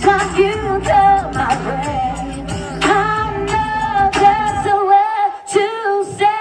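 A woman singing live into a handheld microphone over a backing track. The bass and beat drop out about five seconds in, leaving the voice over held notes.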